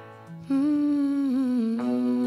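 Live acoustic guitar and voice. Guitar notes ring and fade, then about half a second in a wordless, humming vocal note comes in and is held, dipping briefly in pitch before settling. A new guitar chord is struck near the end.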